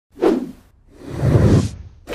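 Two whoosh sound effects: a short one at the start that fades quickly, then a longer one that swells up and cuts off suddenly near the end.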